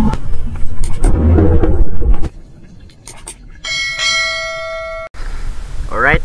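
Intro sound effects: about two seconds of loud, bass-heavy music hits, then a few sharp clicks and a ringing bell chime, the notification bell of a subscribe-button animation, which cuts off suddenly about five seconds in.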